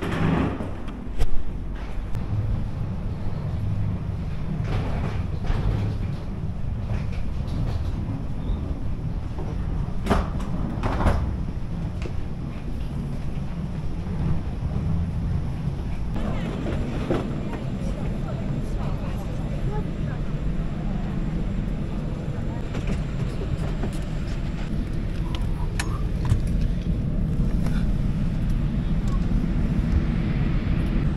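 Steady low rumble of airport apron and aircraft noise heard from the gate and jet bridge, with a few scattered knocks and faint background voices.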